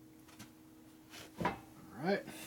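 A faint click, then a short metallic clatter about a second and a half in, as a motorcycle roller chain and parts are handled and shifted by hand.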